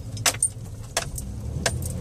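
Steady low drone of a car heard from inside the cabin, with several sharp clicks or jingles scattered through it.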